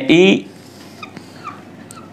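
A man's voice briefly at the start, then a few faint short squeaks of a marker pen drawing a line on a whiteboard.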